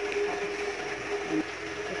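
Steady mechanical hum of a running kitchen appliance, with faint voices in the background.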